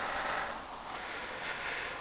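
Steady background hiss with no distinct sound: room tone during a pause in speech.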